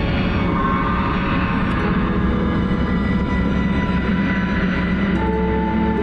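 Film score with sustained orchestral notes under a steady rushing, rumbling whoosh. About five seconds in the whoosh thins and the held notes come through clearer.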